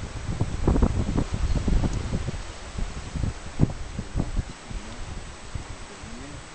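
Wind buffeting the microphone: irregular low rumbles and gusts, heaviest in the first couple of seconds, with a sharper bump about three and a half seconds in.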